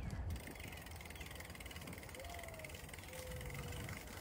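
Bicycle on 32c tyres rolling over a cracked concrete path, a quiet steady low rumble. A faint thin whistling tone comes twice in the middle.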